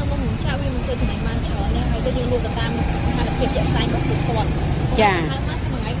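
Voices talking over a steady low rumble, with a short sharp chirp-like sweep about five seconds in.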